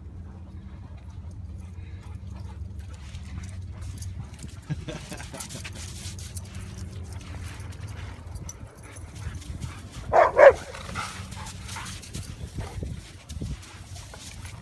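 A dog barks twice in quick succession about ten seconds in, over a steady low rumble.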